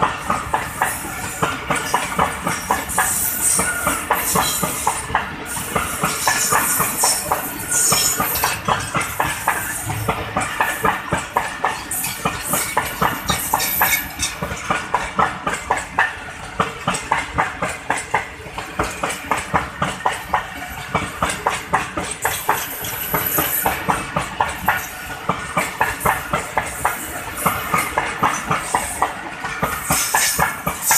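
Passenger coaches of the Millat Express passing close by at speed, their wheels clattering over the rail joints in a fast, continuous clickety-clack over a steady rushing noise.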